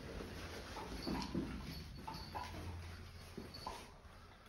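Mirrored sliding wardrobe door being slid open: a low rumble from its rollers with several short squeaks.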